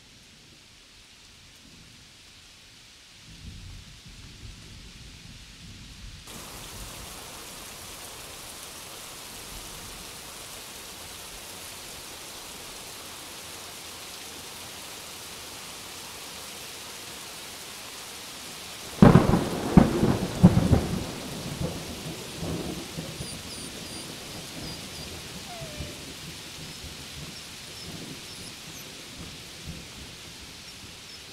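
Rain starts falling about six seconds in after a low rumble and then falls steadily. About nineteen seconds in a loud thunderclap cracks and rumbles on for a couple of seconds, the loudest sound here, and the rain keeps falling after it.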